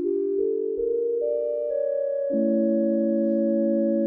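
Soundiron Sandy Creek Organ, a sampled vintage Thomas console organ, playing its tibia solo stop: sustained notes enter one after another to build a chord, which moves to a new held chord a little over two seconds in.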